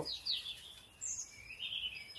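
Faint bird chirps: several short, high chirps and whistles, a couple of them falling quickly in pitch, over quiet background noise.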